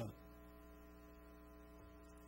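Near silence with a steady electrical hum from the microphone and sound system.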